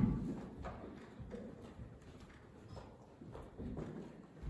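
Footsteps and soft knocks on a hollow stage platform as people walk across it and an acoustic guitar is set down on a stand. The loudest is a thump right at the start, followed by scattered quieter steps and clunks.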